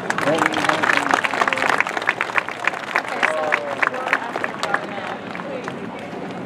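Crowd applauding and cheering, with quick handclaps and a few shouted whoops, dying down about five seconds in.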